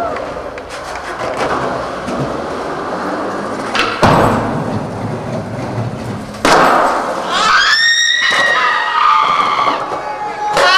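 Skateboard wheels rolling over wooden planks and pavement, with two sharp board impacts (tail pop or landing), about four seconds in and about six and a half seconds in. A high, gliding whoop follows near the end.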